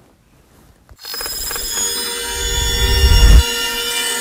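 About a second of quiet, then an electronic logo-reveal sting comes in: many sustained ringing tones over a low rumble that swells until a peak about three and a half seconds in, then drops back and holds.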